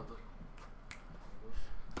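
A single short, sharp click about a second in, against faint room tone.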